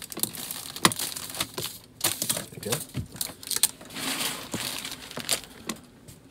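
Plastic poly mailer crinkling and rustling as it is handled, folded and sealed around a garment, with several sharp clicks and taps.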